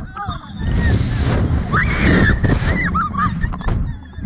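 Wind rushing over the ride-mounted microphone as a Slingshot reverse-bungee capsule is flung upward, a loud steady rumble. About halfway through, a rider lets out a high scream.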